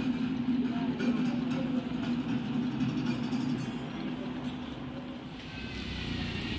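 A steady low hum of indoor room tone with faint voices in the background. Near the end it gives way to a hissier outdoor ambience.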